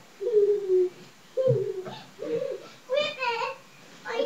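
A young child's high-pitched voice, four short wordless calls in a row.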